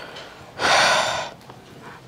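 A person's sharp breath, heard close on a handheld microphone: a single short rush of air lasting under a second, about half a second in.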